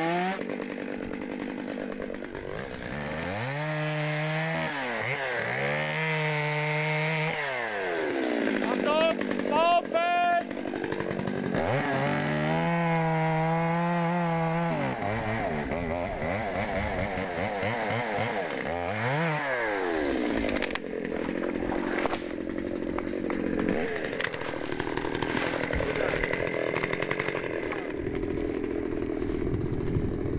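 Stihl two-stroke chainsaw being revved up and down several times, its note rising and falling. About two-thirds of the way in it settles into running under load, rougher and lower, as it cuts through a birch stem at the base.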